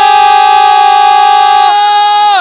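A football commentator's drawn-out goal call: one man's voice holding a single loud, high, unbroken note that celebrates a goal just scored.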